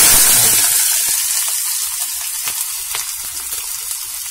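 Chopped onion and green chillies sizzling in hot oil with cumin seeds in a kadhai, just dropped in. The sizzle is loud at first and slowly eases.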